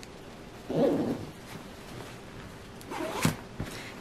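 Hidden zipper on a satin pillowcase being worked, along with handling of the satin fabric, heard as two short, soft bursts.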